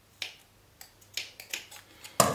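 A pair of scissors worked into a cotton T-shirt to poke holes: about six short, sharp clicks, unevenly spaced.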